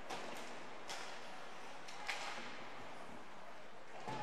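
Faint ice-rink sound during live play: a steady hiss of skates on the ice with a few light taps of sticks and puck.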